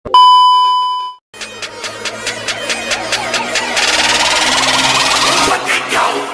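A steady, high test-tone beep of the kind played with TV colour bars, about a second long and cut off sharply, then after a brief gap a fast-pulsing electronic build-up that grows louder and brighter, an edited intro transition effect.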